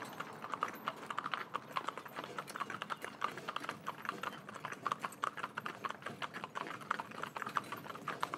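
Hooves of three Shetland ponies clip-clopping on a tarmac road, a quick, uneven patter of overlapping hoofbeats.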